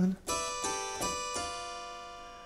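Keyboard chords in a short sung jingle: four chords struck in quick succession, about a third of a second apart, each left ringing and fading away between two sung lines.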